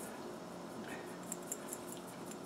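Glass salt shaker being shaken over a pot: a faint scatter of small, high ticks from the shaker and falling salt.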